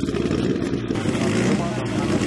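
A rally car's engine running at idle, a dense, rapid, uneven firing beat.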